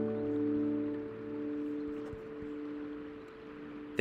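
Acoustic guitar's last strummed chord at the end of a song, ringing on and slowly dying away.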